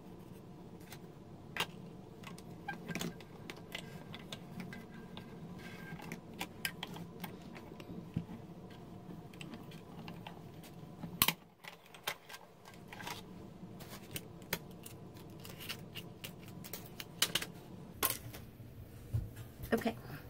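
Scattered small clicks and taps of acrylic cutting plates, a metal die and cardstock being handled and fed through a manual die-cutting machine. There is one sharper knock about eleven seconds in and a cluster of clicks near the end.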